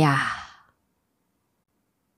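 A woman's voice finishing a spoken line and trailing off in a breathy exhale in the first half second, then silence.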